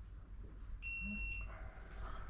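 Digital torque wrench giving a single short electronic beep, one steady high tone of about half a second. It signals that the bolt has been pulled past the torque set on the wrench.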